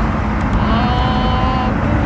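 Steady low rumble of a car heard inside its cabin. About half a second in, a flat high tone is held for roughly a second.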